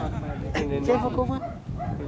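Spectators shouting encouragement, several raised voices calling out in short bursts.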